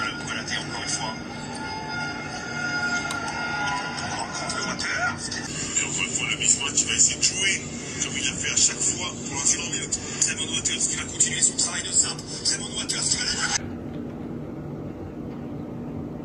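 Basketball broadcast audio played from a screen: arena noise with sneakers squeaking on the hardwood in the first few seconds, then a run of quick sharp court sounds, cutting off suddenly about two seconds before the end.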